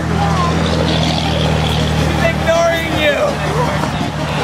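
A steady low motor hum, like an idling engine, strongest over the first couple of seconds and easing off later, under faint voices.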